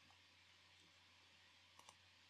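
Near silence with a steady low hum, broken by two faint, quick clicks near the end from computer input at the desk.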